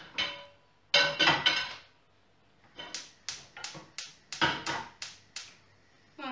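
A metallic clank about a second in, then a gas hob's spark igniter clicking rapidly, about four or five clicks a second for two or three seconds, as the burner is lit under a pan.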